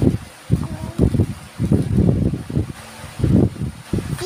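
Irregular bumps and rustling close to the microphone as a paper copybook is picked up and handled, in several uneven bursts.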